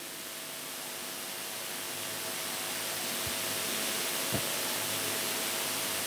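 Steady hiss that grows gradually louder, with a faint steady hum and two faint clicks.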